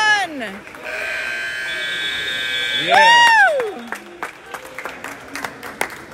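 Pool scoreboard buzzer sounding one steady tone for about two seconds, the signal ending the period, between two long, loud shouts from spectators, the second the loudest.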